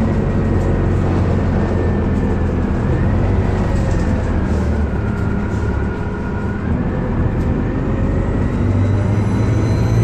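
Detroit Diesel Series 50G natural-gas engine and ZF Ecomat automatic transmission of a 2004 Orion VII bus running under way, a steady low drone with a thin whine on top. The whine sags in pitch around the middle and climbs again near the end.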